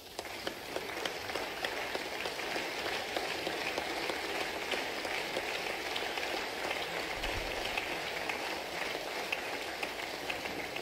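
Applause from the seated chamber: many hands clapping in a steady, even patter for the whole pause.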